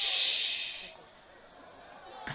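A loud hiss lasting about a second, starting abruptly and fading out.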